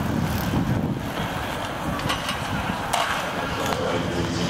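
Outdoor stadium ambience: a steady low rumble and hum of distant voices, with a few sharp clicks about three seconds in.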